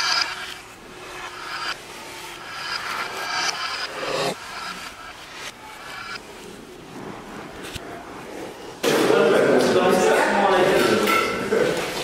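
People talking, faint and broken at first, then loud, overlapping voices from about nine seconds in.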